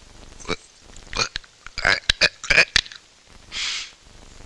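A string of short clicking and popping noises made with the mouth, coming faster about two seconds in, then a short hiss near the end.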